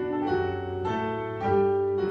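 Piano playing a slow melodic passage, with a new note or chord about every half second.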